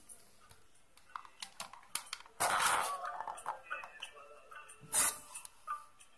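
A smartphone being handled and pushed into the slot of a homemade card-tube and foam-cup speaker. There are a few sharp clicks and knocks, then a loud scraping rush about two and a half seconds in and another short one near five seconds. A song plays faintly from the phone between them.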